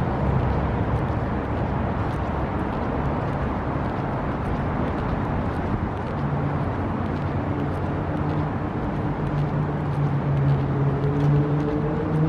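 Street traffic: a steady rumble of road vehicles, with one engine's hum growing louder and rising slightly in pitch near the end.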